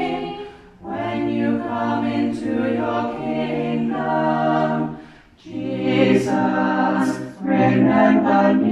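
A small group of voices singing together in long held notes, in phrases separated by brief pauses for breath.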